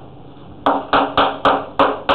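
Chalk tapping against a blackboard during writing: five sharp taps about four a second, beginning about two-thirds of a second in, each with a short ring.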